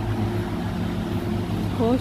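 Steady low machine hum from distillery plant, an even drone with a few fixed tones and no change in pitch. A short spoken "Oh" comes near the end.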